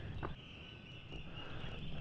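Faint outdoor ambience: a steady high-pitched chorus of animals in the background, with soft footsteps of someone walking.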